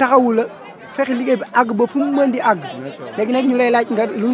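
A man's voice singing an unaccompanied Sufi devotional chant (khadr), in short phrases with long held notes.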